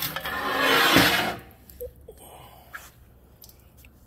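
Handling noise: a rubbing scrape about a second and a half long, followed by a few faint clicks.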